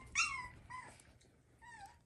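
Miniature schnauzer puppy giving three short, high-pitched whimpers that fall in pitch.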